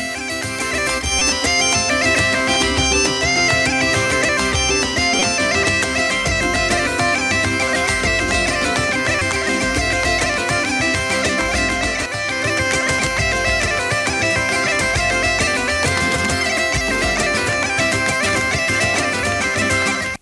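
Bagpipe music: a piped melody over a steady drone, with a low beat pulsing underneath.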